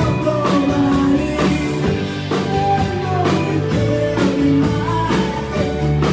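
Live rock band playing a song at full volume, with drum kit, bass, electric and acoustic guitars and keyboards over a steady beat, and a man singing lead.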